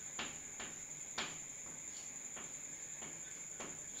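Chalk writing on a blackboard: a handful of short taps and scrapes as letters are formed, over a steady high-pitched whine.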